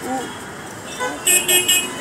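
A vehicle horn tooting three short, high beeps in quick succession in street traffic, with voices talking under it.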